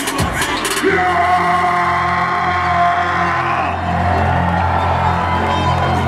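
Live hip-hop concert music played loud through a venue's PA, with a crowd yelling over it. From about a second in, a deep bass note and a higher tone are held for several seconds.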